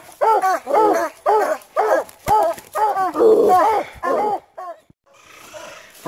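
Coonhound barking in a rapid string of short bawls, about two to three a second, which stops about four and a half seconds in.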